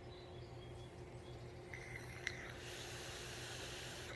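Vape hit from a Kayfun rebuildable atomizer on a 26650 mechanical mod: a click a little after two seconds in, then about a second and a half of faint hissing as the coil fires and air is drawn through it. The coil is due for rebuilding, by the vaper's own account.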